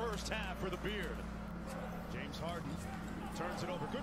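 Basketball game broadcast audio: a commentator's voice, quieter than the talk around it, with a ball bouncing on a hardwood court, over a steady low hum.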